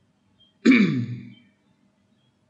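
A man clears his throat once, with a sharp start and a falling pitch that trails off within about a second.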